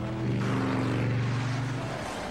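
Cartoon sound effect of a vehicle engine running flat out: a steady drone with a rushing hiss over it, swelling a little after the start.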